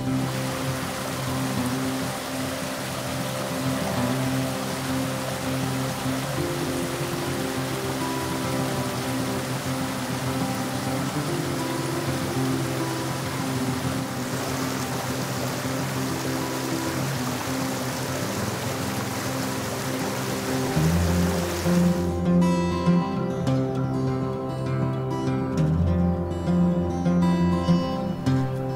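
Small forest creek running over rocks, a steady rush of water, heard together with background music. The water sound stops abruptly about three-quarters of the way through, leaving only the music.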